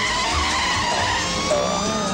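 A car sequence with squealing tyres and a wailing, siren-like tone that rises slowly in pitch during the second half. Music begins to come in near the end.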